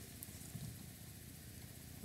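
Quiet room tone: a faint, steady hiss with no distinct sound event.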